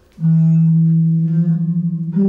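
Steel rods of a Baschet sound structure, sounding through its cone-shaped resonator, ringing one sustained low metallic note that sets in just after the start and holds steady.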